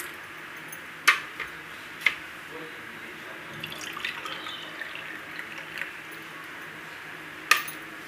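Thick watermelon milkshake poured from a mixer-grinder jar into drinking glasses, a steady liquid pour, with sharp clinks about one and two seconds in and again near the end.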